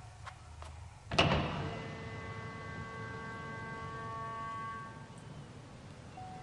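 A glass-paned door slammed shut: a few light clicks, then one loud bang about a second in, followed by several steady held tones lasting a few seconds.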